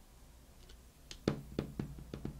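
Tarot cards being handled against a marble tabletop: a quick run of light knocks and taps starting about a second in, the first the loudest.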